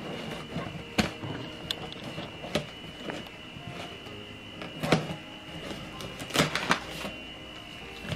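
Scissors cutting along the packing tape on a cardboard shipping box, with scattered sharp clicks and rustling as the blades and hands work the box seam.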